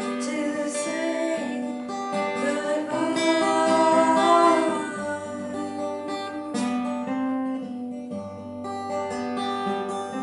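Steel-string acoustic guitar played with a woman singing a long, wavering line over it for about the first five seconds. The guitar then carries on alone.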